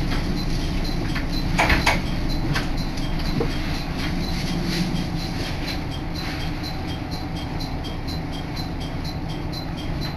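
Interior of a diesel railcar under way: a steady rumble of engine and wheels, with a few knocks around two seconds in, a little quieter in the second half.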